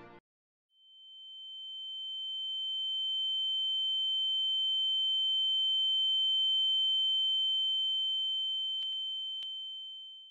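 A single steady high-pitched electronic tone that swells in from silence just after the start, holds evenly and begins to fade at the very end, with two faint clicks about a second before the end. It is an added sound effect, a pure sine-wave ringing.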